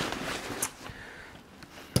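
Nylon duffel bag being handled: a fabric rustle that fades within the first half second, then faint shuffling with a light click and a sharper click near the end.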